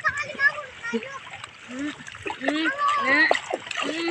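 Shallow seawater splashing around a toddler's kicking legs, with adults and a small child talking and calling over it.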